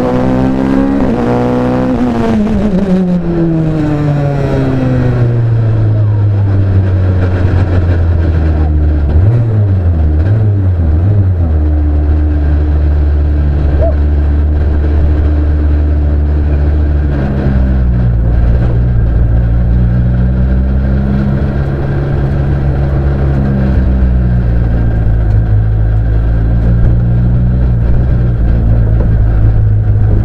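Onboard sound of a Ligier JS49 sports prototype's Honda engine as the car slows after its hill-climb run. The revs fall steeply over the first few seconds, rise and fall briefly a few times about ten seconds in, then hold low as the car rolls slowly with a steady drone.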